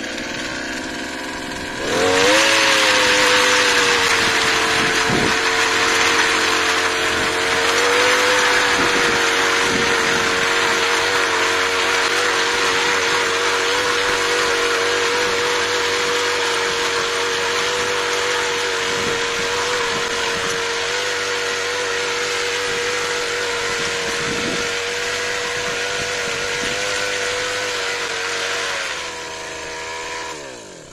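Petrol brush cutter with a cultivator attachment: its engine idles, is revved up about two seconds in and held at high, steady speed while the tines churn dry soil, then drops back near the end.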